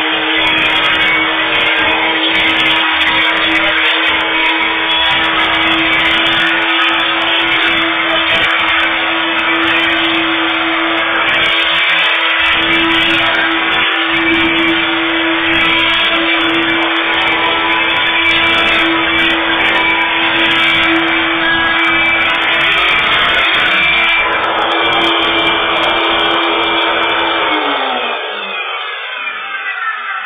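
Kenmore Heavy Duty Plus upright vacuum cleaner running on bare concrete: a steady motor hum over an uneven rumble from the beater bar. Near the end it is switched off and the motor's pitch falls as it winds down. One of its bearings is worn and, by the owner's account, could use changing.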